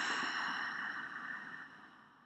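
A woman's long open-mouthed exhale, a breathy sigh that fades away over about two seconds.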